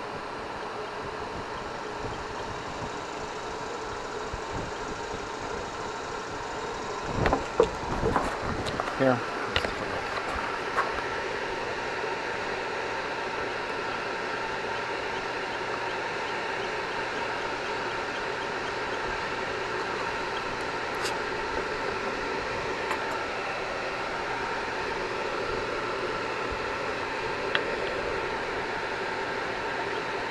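A steady background hum with a few level tones runs throughout, like a fan or distant machinery. About seven to eleven seconds in come a cluster of clicks and knocks from handling the plastic blower housing.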